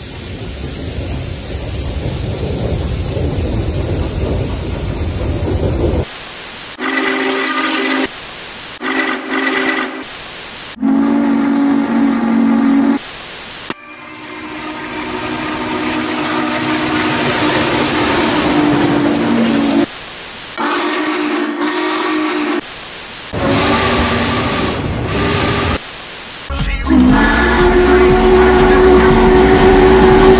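Norfolk & Western 611 steam locomotive hissing steam, then its chime whistle sounding several tones at once in a string of abrupt, spliced-together blasts, the longest held about six seconds in the middle.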